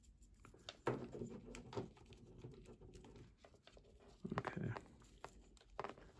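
Faint rustling and small clicks of hands handling a plastic action figure while fitting a tiny strap onto it.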